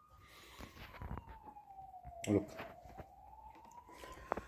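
A faint siren wailing slowly up and down, with small clicks from hands working the sewing machine's thread guide.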